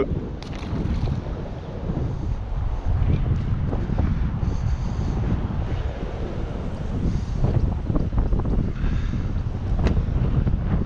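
Wind buffeting the microphone: a low rumble that rises and falls in gusts.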